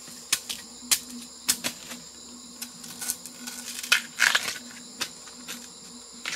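Irregular sharp knocks of a machete blade striking a hand-held piece of bamboo. About four seconds in comes a longer scraping rustle.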